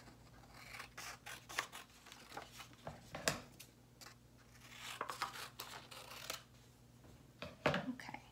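Scissors cutting through folded drawing paper in a series of short, irregular snips, with paper rustling as the sheet is turned and the cut quarters are handled.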